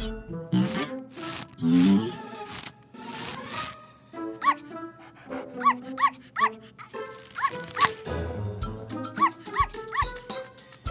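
Cartoon soundtrack: music with a few knocks and rushing sound effects, then from about halfway a cartoon puppy yipping over and over in short, high-pitched barks.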